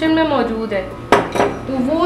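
A utensil clinks once against a cooking pot about a second in, with a short ring after it.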